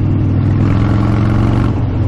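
Harley-Davidson V-twin motorcycle engine running while riding along a street, its note swelling for about a second in the middle and then easing.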